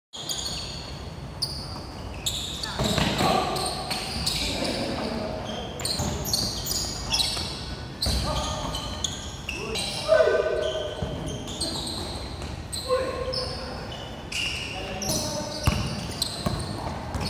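Basketball bouncing repeatedly on a hard court floor as players dribble and pass, with players calling out to each other now and then.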